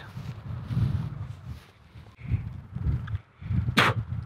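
Footsteps on mown grass: a series of soft, low thuds at walking pace, with low wind rumble on the microphone.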